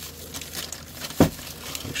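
Crumpled brown kraft packing paper crinkling in a cardboard box as it is handled, with one dull thump a little past the middle.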